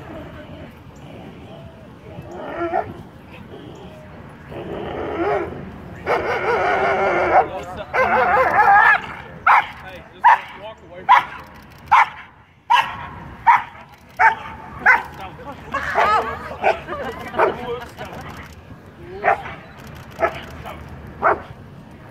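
A police dog barking during bite-work agitation, a long run of short, sharp barks about one every two-thirds of a second. Before the barks, about a quarter of the way in, there are a few seconds of louder, drawn-out yelling.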